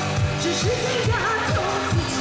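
Amplified pop music played live, a steady kick-drum beat about two strokes a second under a woman's sung melody.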